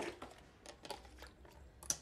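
Faint, scattered light clicks and taps of dishes and utensils being handled at a kitchen counter, over a low steady hum, with one sharper click near the end.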